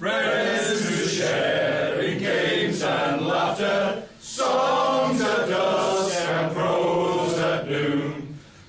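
A group of men singing together unaccompanied, a cappella, in long held phrases, with a short break for breath about four seconds in.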